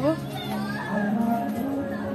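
Children's voices in the background of a playground: distant chatter and calls of children playing.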